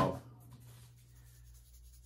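The end of a spoken word, then faint room tone with a low steady hum.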